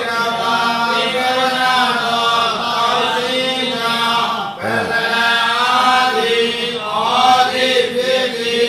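A Buddhist monk's voice chanting a text in a slow, intoned recitation with long held notes. There is one short break for breath a little past halfway.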